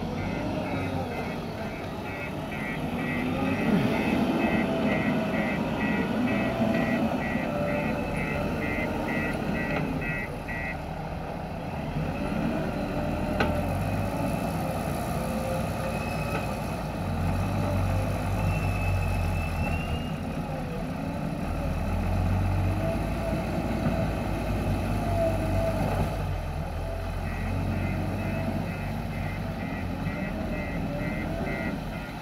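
Diesel engines of a JCB 3DX backhoe loader and a tipper truck running and revving as they move into position for loading. A reverse alarm beeps rapidly for about the first ten seconds and starts again near the end.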